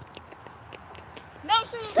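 A few faint scattered ticks and taps over quiet outdoor background, then a child's high voice calls out about a second and a half in.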